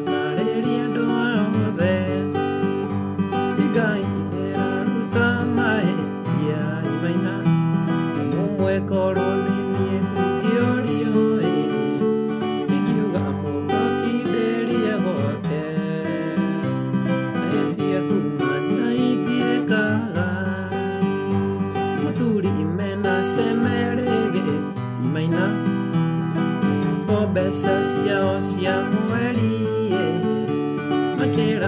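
Acoustic guitar played continuously, picked and strummed chords with a steady bass line, in the mugithi style.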